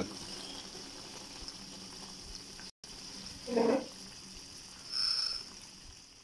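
Chicken curry broth with carrots and potatoes simmering in a wok: a steady low hiss of bubbling. A short pitched sound, the loudest moment, comes a little past the middle, and a brief high chirp about five seconds in.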